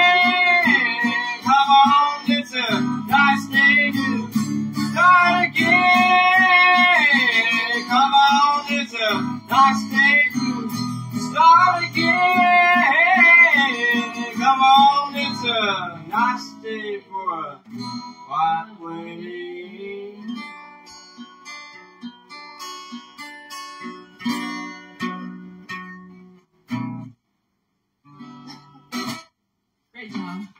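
Strummed acoustic guitar under a woman singing with a wavering vibrato. About halfway through the singing stops and the guitar plays on alone, ending the song a few seconds before the close, with a couple of short knocks after it.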